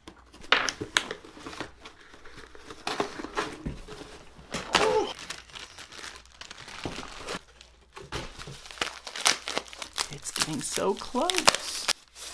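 A cardboard shipping box is torn open, then a plastic bag and paper wrapping are crinkled and rustled as the contents are unpacked. It is a busy run of sharp tears and crackles.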